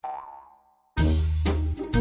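Background music: a short pitched sound fades out over the first second, then an upbeat track with a heavy bass beat comes back in about a second in.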